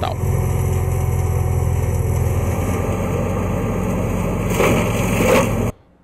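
Tractor engine running steadily while driving a Tritocap forestry mulcher through brush, with a louder rush of shredding about four and a half seconds in. The sound cuts off suddenly shortly before the end.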